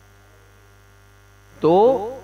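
Steady low electrical mains hum in a pause between words, with a man's voice saying a single word near the end.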